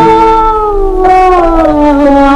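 A woman singing a long held note with vibrato in a Turkish art song in makam Rast. The note slides down in pitch about a second in and again near the end, over steady sustained accompaniment notes.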